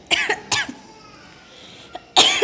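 A young boy coughing twice in quick succession, two short sharp coughs near the start.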